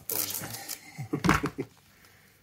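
A man laughing, with handling knocks as a silicone intake pipe is put down on a cardboard-covered table; the loudest bump comes a little past the middle.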